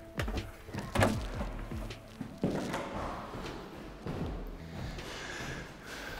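Scattered footsteps and knocks on a hard floor, with a louder thud about two and a half seconds in.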